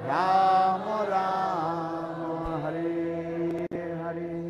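Devotional kirtan chanting: sung voices holding long, bending notes of a mantra phrase that begins just after a brief pause, with a short click near the end.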